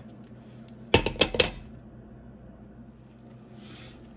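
Kitchenware clinking: four quick, ringing clinks about a second in, then only a low background hiss.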